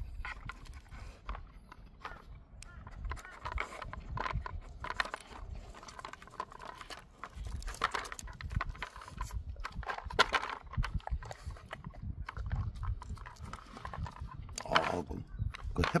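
A dog licking and nosing at a plastic hamburger-shaped treat-puzzle toy to get the treats out, with wet tongue smacks and irregular clicks and knocks as the toy's layers shift and rattle on concrete.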